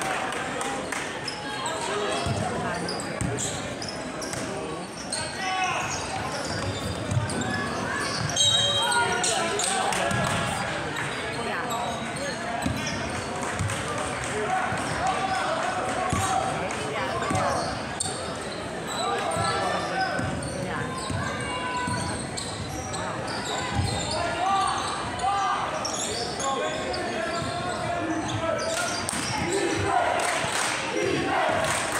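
Indistinct chatter from spectators in a reverberant school gymnasium, with a basketball bouncing on the hardwood floor now and then.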